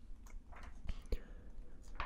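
Glossy comic book pages being turned by hand: soft paper rustling with a few faint, crisp ticks.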